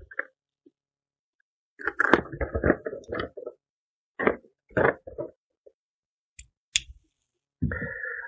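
A small knife slitting the tape seal on a cardboard box: a scratchy run of cutting and scraping about two seconds in, then a few shorter scrapes and two sharp clicks near the end.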